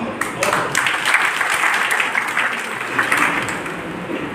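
An audience applauding: many hands clapping together, easing off near the end.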